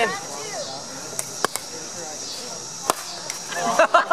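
Pickleball paddles hitting the plastic ball in a serve and return: two loud, sharp pops about a second and a half apart, with fainter ticks around them.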